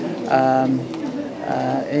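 A man's voice holding two drawn-out, level hesitation sounds ("uh") between phrases, the second about a second and a half in.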